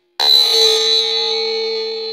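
A single bell-like chime, struck once about a quarter second in, that rings on with several steady tones and slowly fades. It is part of a music or sound-effect track laid over the video, not a sound from the experiment.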